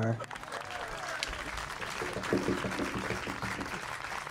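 Audience applauding lightly, with faint voices underneath.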